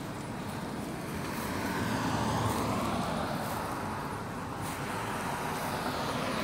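A road vehicle passing, its sound swelling to a peak about two seconds in and fading again, over steady outdoor traffic noise.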